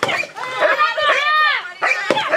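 Loud, high-pitched human cries that rise and fall in pitch, in wordless yelps and wails.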